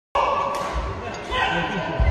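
Voices echoing in a large indoor sports hall, with scattered low thumps.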